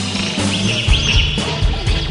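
Rock band playing an instrumental jam live, with no vocals. High gliding squeals come from the electric guitar, and bass and drums come in heavily about a third of the way in.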